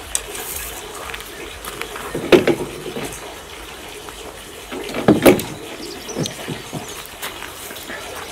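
A fishing rod being handled and fitted into a plastic canoe rod holder: a few short knocks and clicks, the two loudest about two and a half and five seconds in, over a steady background hiss.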